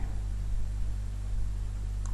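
Steady low hum with a faint hiss underneath: the room tone of the recording.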